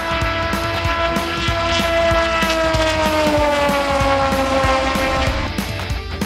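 A Top Race V6 race car's engine running hard along the oval, its pitch falling steadily over a few seconds as the car goes by and away. Rock music with a steady beat plays underneath.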